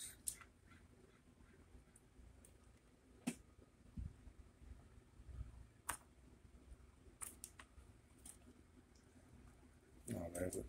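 Near silence, with a handful of faint, scattered clicks and a couple of soft low thumps from hands handling bench test equipment.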